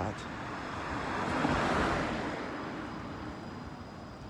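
A car driving past on the street, its tyre and engine noise swelling to a peak about two seconds in and then fading away.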